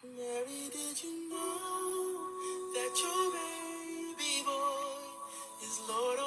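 Recorded song of several singing voices in harmony, holding long notes; a new phrase comes in suddenly right at the start after the previous one fades away.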